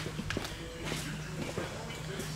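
Footsteps on a concrete shop floor, with light scattered knocks, over a steady low hum.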